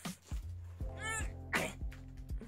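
Background music with a steady low beat, over which a woman gives a short strained vocal noise about a second in, followed by a sharp breath, as she lifts a heavy box.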